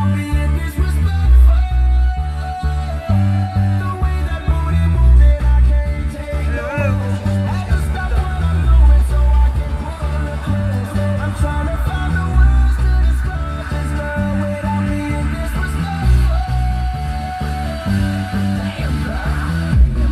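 Music with a heavy, pulsing bass line, guitar and singing, played loud through the car's aftermarket audio system with the doors open.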